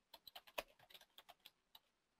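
Computer keyboard typing: about a dozen faint keystrokes in quick, uneven succession.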